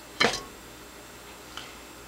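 A single sharp click about a quarter of a second in, over faint room tone.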